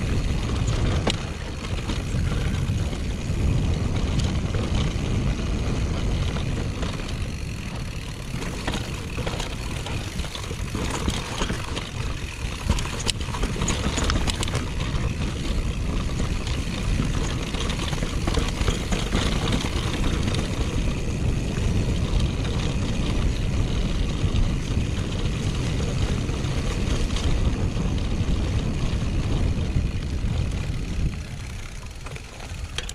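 Mountain bike riding fast down a grassy dirt trail: a steady rumble of wind on the camera's microphone and of tyres on the ground, with scattered clicks and rattles from the bike.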